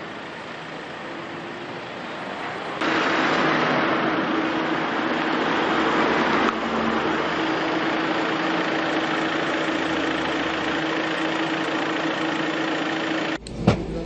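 Street sound with a motor vehicle engine running steadily under a constant hum; it jumps abruptly louder about three seconds in. A single sharp knock comes near the end.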